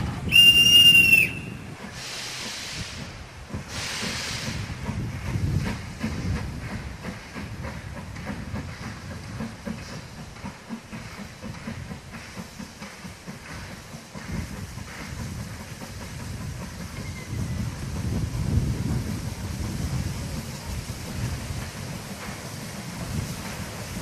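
A narrow-gauge steam locomotive gives one short whistle blast just after the start. Steam then hisses in two bursts, and the locomotive pulls its train away with a low, pulsing rumble.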